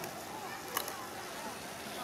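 Faint voices over steady outdoor background noise, with one sharp click a little before the middle.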